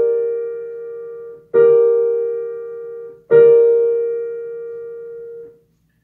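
A G minor triad (G, B-flat, D) played on a digital piano, sounding at the start and struck again about a second and a half in and about three seconds in, each time left to ring and fade; the last chord dies away shortly before the end.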